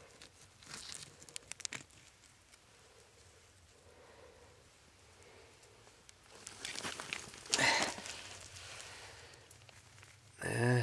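Bare hands scraping and pulling loose soil and small rock fragments out of a hole in a dirt bank. A few small clicks and rustles come in the first two seconds, then a quiet stretch, then louder scraping and crumbling of dirt in the last few seconds.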